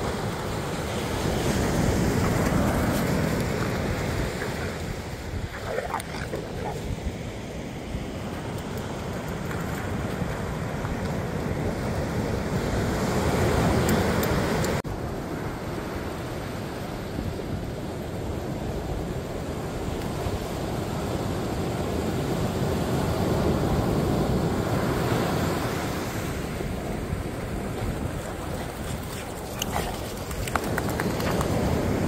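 Ocean surf breaking and washing up the beach, swelling and fading with each wave, with wind buffeting the microphone.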